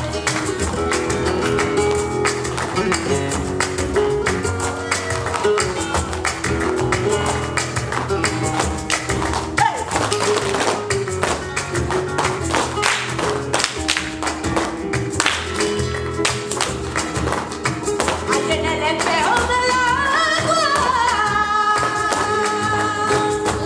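Flamenco music in the tangos style: guitar and sharp rhythmic percussive strikes, with a singer's wavering line rising and falling near the end.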